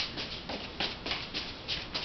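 Three juggling balls landing softly in the hands, faint irregular catches a few times a second.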